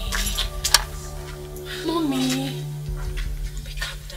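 Background film music of steady held tones. About halfway through there is a short voice sound that glides in pitch, and a few light clicks are scattered through it.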